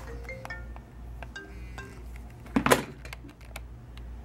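Leather being handled and flexed on a plastic cutting board, with a loud rub about two-thirds of the way in and several short, clear pitched tones scattered through.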